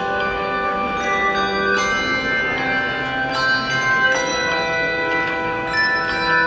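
Handbell choir playing a slow piece of music. Chords are struck about once a second and each ring on and overlap.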